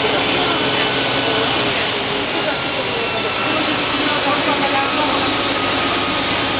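Karosa B 961 articulated city bus under way, heard from inside the passenger cabin: its diesel engine runs steadily with a hum of several steady tones over road and tyre noise.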